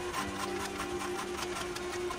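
Hydraulic forging press running with a steady hum and a rapid, even rattle. A lower tone joins shortly after the start as the ram bears down and squeezes the hot Damascus billet.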